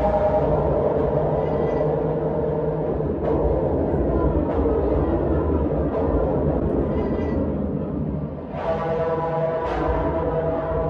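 Live electric guitar played through effects, heard through the club PA: a dense, sustained drone over a steady low rumble, with a few sharp plucked attacks and a fresh ringing chord struck near the end.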